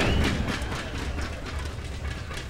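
Wind buffeting the microphone: a steady low rumble, with a few faint knocks over it.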